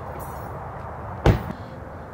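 A Honda sedan's driver door being shut: one sharp, loud thud about a second and a quarter in, over a low background hum.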